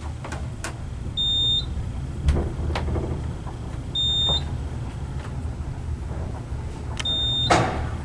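Schindler traction elevator car travelling upward: a steady low rumble of the ride, with a short high electronic beep at each floor passed, three in all about three seconds apart. Sharp knocks about two seconds in and a louder clunk near the end.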